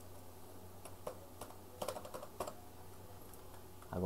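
Computer keyboard typing: a handful of short, scattered keystrokes starting about a second in, over a faint steady low hum.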